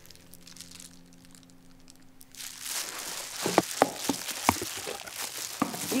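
Plastic wrapping and disposable plastic gloves crinkling and rustling as a food container is unpacked, with a few sharp clicks. It starts after a quiet first couple of seconds.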